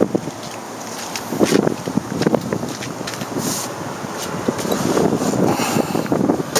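A 1953 Willys M38A1 Jeep's original four-cylinder F-head engine idling, with wind buffeting the microphone in uneven gusts.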